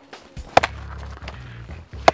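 A Miller Bros. Blades fixed-blade knife stabbed down hard into a soft Level IIIA ballistic armor panel: one sharp strike about half a second in.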